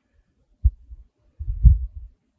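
Two dull, low thumps, a short one just over half a second in and a longer, rumbling one near the end: body movement rubbing or bumping against the microphone.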